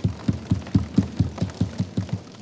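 Members of parliament thumping their desks with their hands in a fast, even rhythm, about five or six low thumps a second, the usual show of support for a speaker's point.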